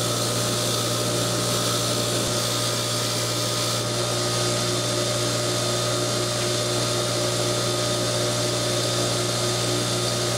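Bench grinder motor running at steady speed with a constant hum and hiss, as small metal brake parts are held against its wire wheel to clean them.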